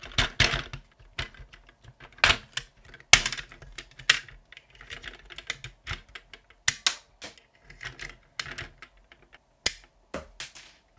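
Hard plastic parts of a Paw Patrol Marshall Transforming City Fire Truck toy being handled, giving irregular clicks and snaps as the ladder is raised and extended and the pieces are moved.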